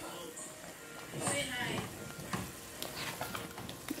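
Wooden spoon stirring a pot of thick, simmering oha soup, with a few light clicks.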